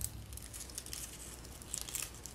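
Faint rustling and crinkling of cardstock as fingers press a curled paper-strip centre into a paper flower, with a few small crackles near the end.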